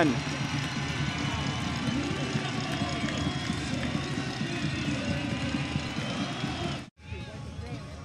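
Soccer stadium ambience after a goal: a steady mix of many crowd and player voices with no single voice standing out. It cuts out abruptly about seven seconds in and comes back quieter.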